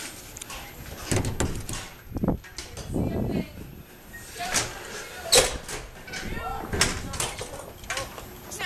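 Knocks and clatters of a glass entrance door and people moving through it, under indistinct voices; the sharpest knock comes a little past the middle.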